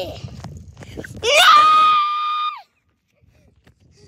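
A child's high-pitched scream, held steady for about a second and a half, rising at its start and dropping at its end before cutting off. A low rumble comes before it.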